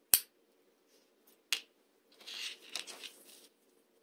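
Hands handling a crocheted yarn strap with a small metal lobster clasp: two sharp clicks about a second and a half apart, the first the loudest, then about a second of soft rustling of the yarn.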